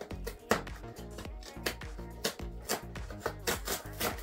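Cardboard box being torn open and handled by hand: a string of sharp rips and snaps of card, over steady background music.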